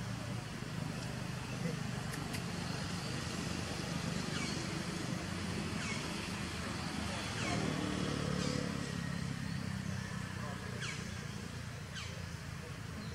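Steady low hum of a motor vehicle engine running, a little louder for a second or two past the middle, with a short high falling call repeating every second or two over it.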